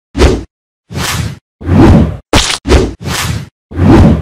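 Intro-animation sound effects: a run of about seven short whooshes, each with a hit, separated by brief gaps.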